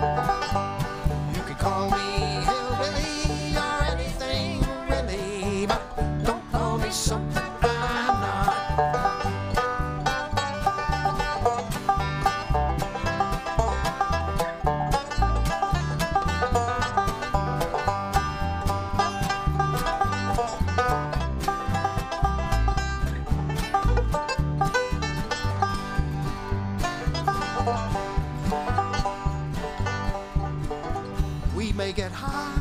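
Live bluegrass band playing: banjo, two acoustic guitars and upright bass, with a steady beat throughout.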